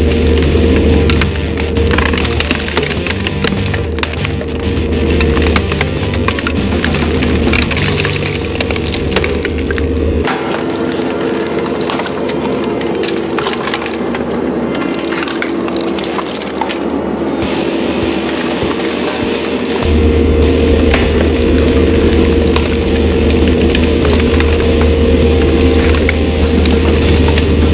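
Road roller's engine running steadily as its steel drum rolls over flat-screen LCD monitors, with repeated cracking and snapping of plastic casings and glass panels. The engine hum is fainter for about ten seconds in the middle.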